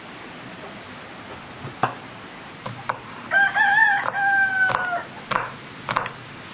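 A rooster crows once, starting about halfway through: a wavering call that settles into a long, slowly falling note, close to two seconds in all. Sharp knife chops on a wooden cutting board come every second or so around it.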